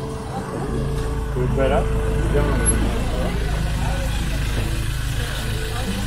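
A vehicle engine idling with a steady low hum, under people's voices.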